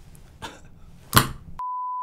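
A short censor bleep near the end: one steady mid-pitched beep laid over audio that has otherwise been cut to silence. Just before it comes a short, sharp burst of sound, the loudest moment.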